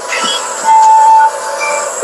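A recorded chant playing loudly in the background over a phone livestream, with one high note held steady for about half a second in the middle.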